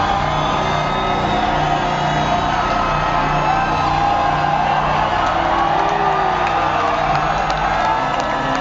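Loud live rock music heard through a venue PA, a steady repeating low note running under it, with the audience whooping and cheering over the top.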